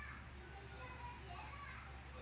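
Faint children's voices chattering in the background over a steady low hum, with no clear words.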